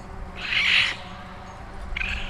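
A baby raccoon kit gives one short, high cry about half a second long, a little under a second in.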